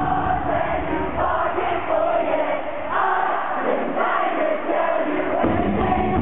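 Pop-punk band playing live in an arena, with the crowd singing and shouting along. The band's low end drops away a little past halfway, leaving mostly voices, and comes back in hard shortly before the end.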